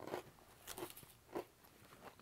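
Faint crunching of a person biting and chewing a chocolate cookie with a crisp edge, about three short crunches half a second apart.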